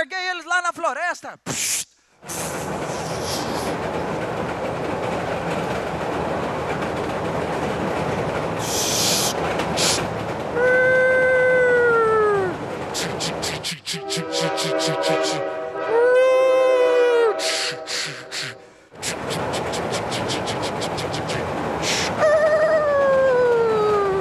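Recorded train sound effect played over a loudspeaker: the steady running noise of a moving train, with a horn blast that falls in pitch about ten seconds in, a longer held chord-like horn blast in the middle, and another falling blast near the end.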